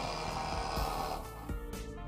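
Cordless impact driver hammering rapidly on a nut, the impacts stopping a little over a second in. The driver is a Milwaukee M12 Fuel fitted with the anvil of the M12 stubby impact wrench. Background music plays along with it.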